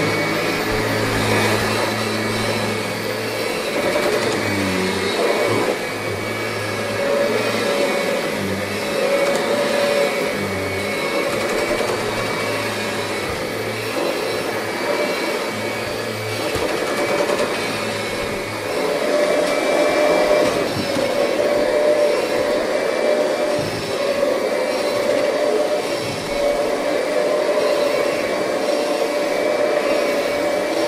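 Kirby G7 upright vacuum cleaner running steadily in place, its motor and fan giving an even hum with a high whine over it, and a lower hum that comes and goes during the first half.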